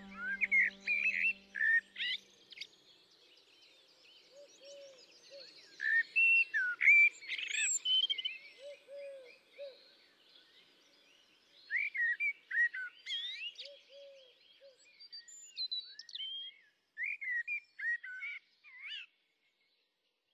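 Songbirds chirping and singing in quick, varied phrases, in clusters with short pauses, and a few softer, lower calls now and then. A held music chord fades out in the first two seconds, and the birdsong stops about a second before the end.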